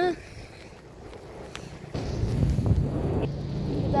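A low steady motor hum with rumble, setting in about two seconds in and running on.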